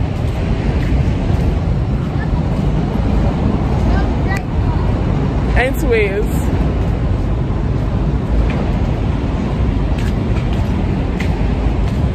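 Steady low rumble of city street traffic. About six seconds in, a short gliding vocal sound from the woman holding the phone.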